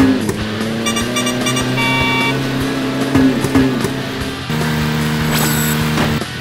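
Cartoon car engine sound effect running steadily under background music, with a few short electronic beeps about a second in.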